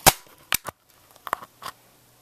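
A stapler snapping against the plastic casing of the Flip camcorder that is recording: a loud sharp click at the start, then four fainter clicks over the next second and a half.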